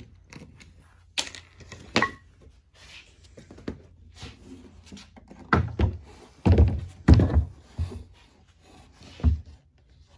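Wooden knocks and heavy thuds as a cornhole board frame with bolted-on legs is handled and set down on a workbench: a couple of sharp knocks early, then a run of heavy low thuds around the middle and one more near the end.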